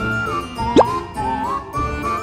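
Light background music: a single sliding melody line over a steady beat. A short, quickly rising pop sound effect cuts in just under a second in and is the loudest moment.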